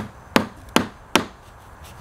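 Claw hammer driving a plastic-cap nail through a foam pool noodle into a wooden board: four sharp blows about 0.4 s apart, stopping just over a second in.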